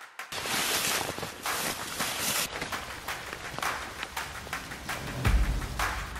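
Footsteps crunching and rustling through dry, tall marsh grass and brush, with a steady rustle for the first two seconds and then irregular crackling steps. A low, heavy thump comes in near the end.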